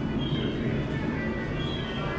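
Indistinct chatter of a crowd of visitors over a steady low hum, with no single voice standing out.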